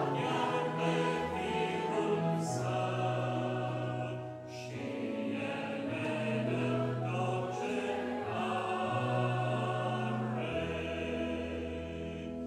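Congregation singing a hymn in Romanian, accompanied by grand piano, with a short break between lines about four seconds in.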